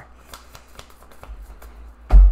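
Tarot cards shuffled by hand: faint, quick, irregular clicks of the cards against each other.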